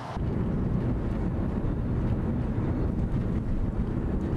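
A moving car's road and wind noise: a steady low rumble with wind buffeting the microphone, which cuts in abruptly just after the start.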